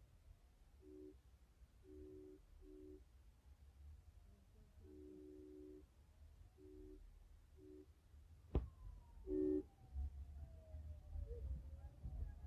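Faint street sounds at a building fire: short two-tone vehicle horn honks repeated at irregular intervals over a distant siren that slowly wails down and up in pitch. A single sharp knock about eight and a half seconds in is the loudest sound.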